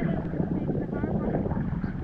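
Choppy seawater sloshing and lapping right against a camera held at the water surface, with wind buffeting the microphone.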